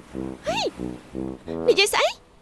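Human voices with background music: a man's voice in short, evenly spaced low pulses, a woman's exclamation rising and falling in pitch about half a second in, and a sharp rising cry near the end.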